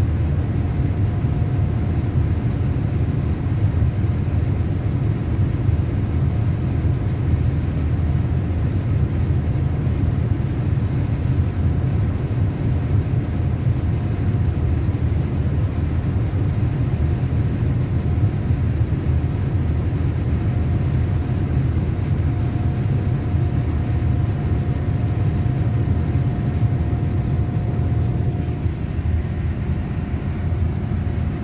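Airliner cabin noise in flight: a steady deep rumble of engines and airflow, with a faint thin hum that comes and goes.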